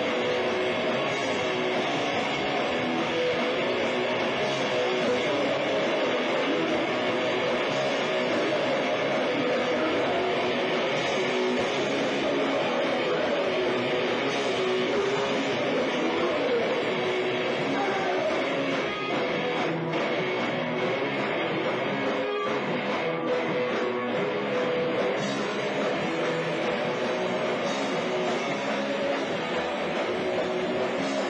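Punk rock band playing live in a club: distorted electric guitars and drums at a steady level, with no break.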